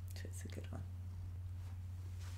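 Quiet room tone with a steady low hum, and a faint whisper in the first second.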